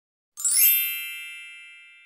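A single bright chime sound effect for a logo intro, struck about a third of a second in with a brief sparkly shimmer on top, then ringing on several steady tones and slowly fading away.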